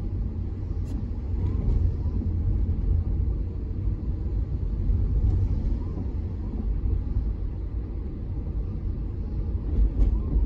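A car driving on a rain-wet road, heard from inside the cabin: a steady low rumble of road noise.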